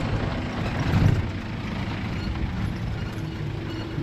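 A tricycle ride heard from inside the passenger cab: a steady rumble of the vehicle and the road, with a louder low bump about a second in. A faint steady hum comes in near the end.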